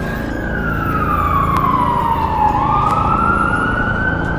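Siren wailing: one slow fall in pitch over about two and a half seconds, then a rise back up.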